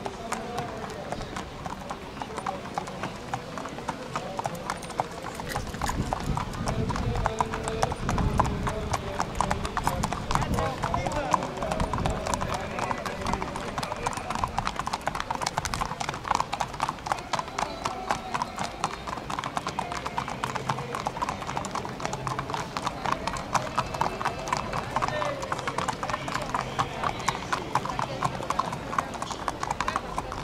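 Hooves of Arabian racehorses clip-clopping on a paved path as several horses are walked by hand, a steady run of hoofbeats throughout.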